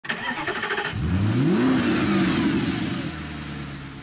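Car engine being started: the starter cranks rapidly for about a second, the engine catches, revs up once and drops back, then settles to a steady idle.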